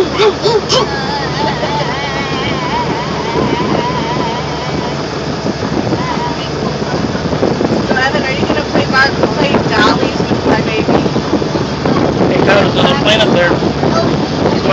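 Steady engine drone mixed with wind buffeting the microphone, with voices of people close by.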